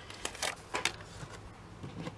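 A few light ticks and rustles, spaced irregularly, from card and craft tools being handled and picked up by hand.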